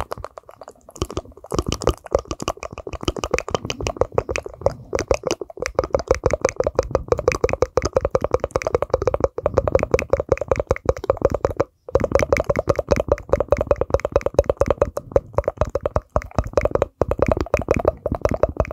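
ASMR mouth sounds made into the microphone through cupped hands: a fast, steady run of tongue clicks and pops, several a second, each with a short ringing tone. It breaks off briefly about two-thirds through, then carries on.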